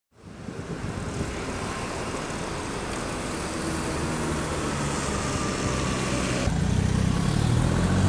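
Street traffic noise with running car engines. After a cut about six and a half seconds in, a nearby engine's low hum is louder.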